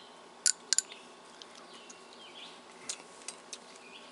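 A few sharp, light clicks from handling a small glass sauce bottle and spoon: three close together in the first second, then a few fainter ticks near the end. Faint bird chirps sound in the background.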